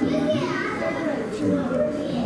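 Indistinct chatter of several people, children's voices among them, talking over one another.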